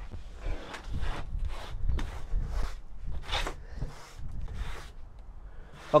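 A run of quick, soft scuffing strokes, about two to three a second, from sweeping up loose potting soil and debris.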